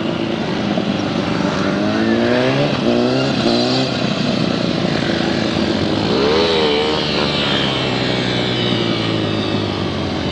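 Sport motorcycle engine accelerating away through several quick upshifts, its pitch climbing and dropping back with each gear. About six seconds in it revs up and back down once, then runs at a steady pitch.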